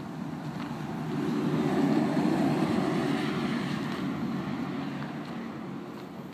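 A low vehicle rumble that swells to its loudest about two seconds in and then slowly fades, as of a motor vehicle passing.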